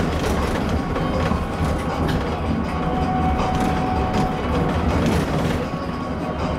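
Cabin noise of a Skywell NJL6859BEV9 battery-electric bus on the move: steady low road and tyre rumble with light rattling of interior fittings.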